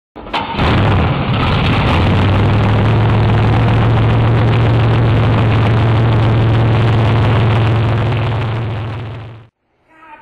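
Loud engine running steadily at one constant pitch, fading out near the end.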